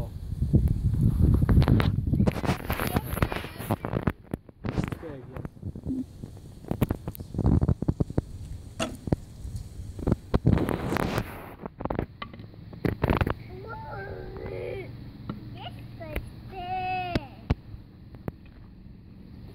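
Wind rumbling on the microphone, with scattered sharp knocks and clicks, and a young child's high voice briefly near the end.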